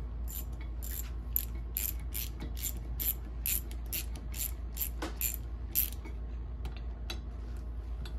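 Hand ratchet with a socket extension clicking in quick back-and-forth strokes, a little over two a second, as it runs bolts down into the Ski-Doo 800R engine case. The strokes thin out after about six seconds.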